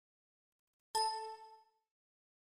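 A single computer system alert chime, a bell-like ding about a second in that rings out and fades within a second.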